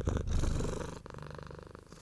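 A low, rumbling purr-like sound in slow swells, weaker in the second half.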